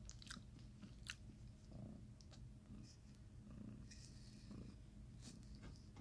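Near silence: faint room tone with a few scattered soft clicks and handling noises.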